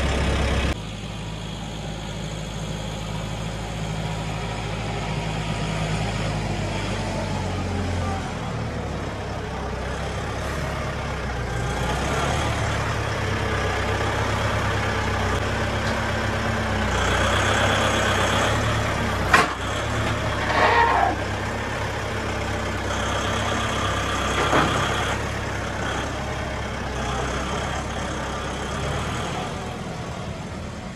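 Compact farm tractor's engine running steadily, with a sharp click about two-thirds of the way through.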